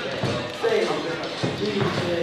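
Indistinct voices of several people talking in a large room, with a few dull thumps among them.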